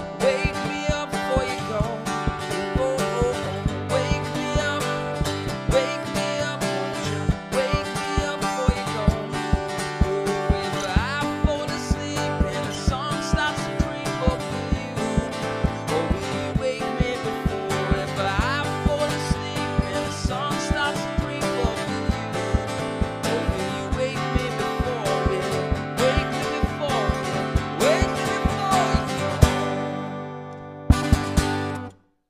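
An acoustic guitar strummed in a steady, percussive rhythm, with a man singing a melody over it.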